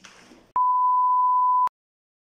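A single steady electronic beep at about 1 kHz, lasting about a second, switching on and off abruptly and followed by dead silence: an edited-in sine-tone bleep.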